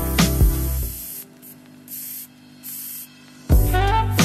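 Aerosol spray-paint can hissing in two short bursts of about half a second each as paint goes onto the wall. Background music plays for the first second, drops out during the spraying, and comes back just before the end.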